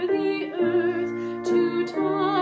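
A woman singing a Christmas carol solo in a trained voice with clear vibrato, moving to new notes twice, over low sustained accompanying notes.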